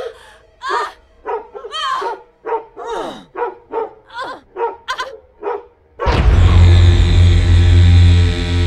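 Experimental music: a run of short, separate pitched yelps, about two a second, some of them gliding down in pitch. About six seconds in, a loud, dense passage cuts in, with a deep bass drone and held tones.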